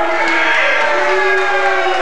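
Long, sliding sung vocal notes at a steady loud level.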